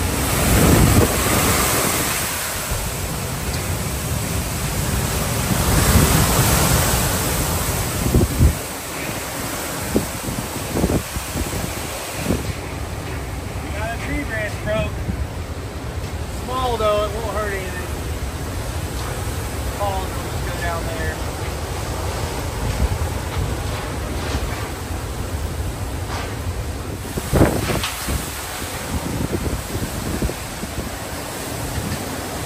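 Hurricane wind blowing hard on the microphone in gusts, with strong surges about a second in and again around six seconds in.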